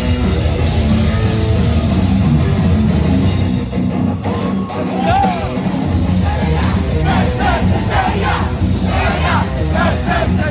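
Heavy metal band playing live, heard from inside the crowd: distorted guitars, bass and drums, with a short drop in the music about four seconds in. After that, high voices sing and shout in quick repeated phrases over the band.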